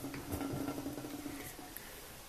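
Faint small clicks and rubbing as the cap is screwed shut on a small glass bottle of propolis tincture, over a steady low hum.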